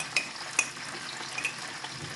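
Metal spoon scraping and clinking inside a glass jar of pickled cucumber relish, a few sharp clinks with the loudest two in the first second. Under it runs a steady sizzle of fish frying in oil.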